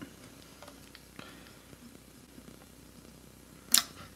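A metal can of Goof Off remover being handled and its cap worked open: a few faint small clicks, then one sharp click near the end.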